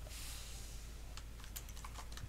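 Computer keyboard typing: a quick run of faint key clicks in the second half, after a brief hiss, over a low steady hum.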